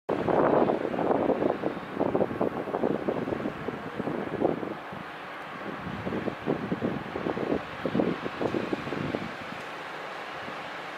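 Wind buffeting the microphone in irregular gusts, strongest in the first couple of seconds, dying away near the end to a steady, quieter outdoor background.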